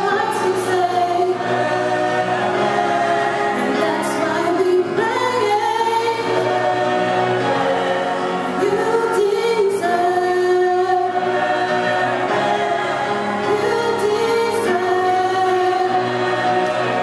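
A small gospel vocal group singing a worship song, several voices holding long notes together in harmony.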